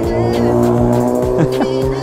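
A big motorcycle passing close by, its engine loud enough to drown out conversation. The engine note holds steady, then drops about a second and a half in as it goes by.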